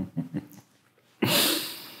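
A person laughing: a quick run of short laugh pulses, then about a second in a loud breathy burst of laughter that fades within about half a second.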